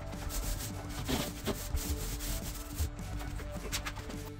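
Irregular rubbing and scraping against wood, with scattered short knocks, as timber shelf supports are handled and fitted.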